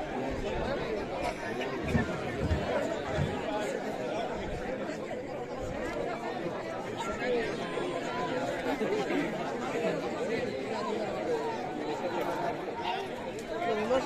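Crowd of spectators chattering, many voices overlapping in a steady babble.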